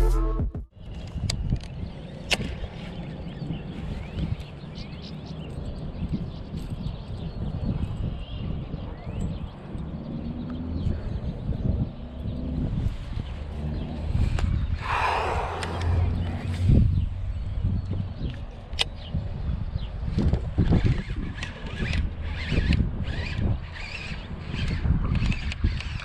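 Wind rumbling on an action-camera microphone while a baitcasting reel is cast and cranked, with scattered light clicks from the reel and handling. A short rushing noise comes about halfway through, as the rod is swung in a cast.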